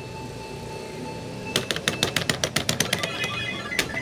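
Electronic fruit slot machine ticking rapidly as its light runs around the board of symbols. The ticks start about a second and a half in and slow before the light stops, with a faint steady electronic tone before them.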